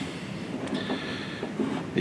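Faint handling noise of a cable and connector being worked into a port on a plastic electronics box, with a faint, high, steady tone for about a second in the middle.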